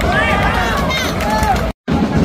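Stadium crowd noise at a football match: a dense, steady din with nearby fans' voices shouting over it. The sound cuts out briefly near the end.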